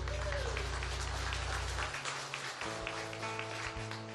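Congregation applauding as the worship band's last chord rings out and fades, with the clapping carrying on after it dies away. About halfway through, a soft sustained chord from the band comes in under the applause.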